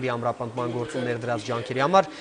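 Speech only: a man talking steadily in Armenian.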